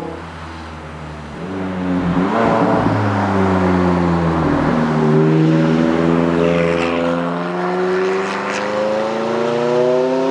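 Sports car engine running hard: the engine note drops as the car slows, bottoms out about halfway through, then climbs steadily as it accelerates away. A car passes by about two to three seconds in, and there are a few short high crackles near the end.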